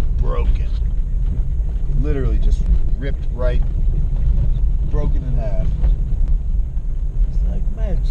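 Jeep ZJ driving slowly up a gravel trail, heard inside the cabin as a steady low rumble. Short, wavering, voice-like pitched sounds come and go over it every second or two.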